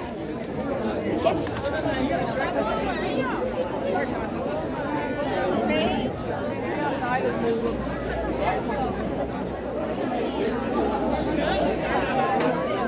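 Crowd chatter: many people talking at once, overlapping voices with no single speaker standing out.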